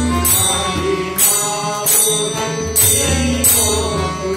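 Devotional bhajan music: a harmonium and tabla drums playing together, with a bright metallic stroke about every three-quarters of a second keeping the beat.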